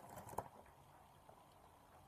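Near silence: faint room tone, with one short faint click about half a second in.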